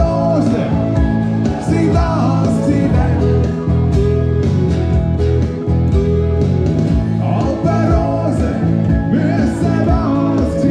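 Live band music: an electric bass and a twelve-string acoustic guitar played together, with a man singing lead over them to a steady beat.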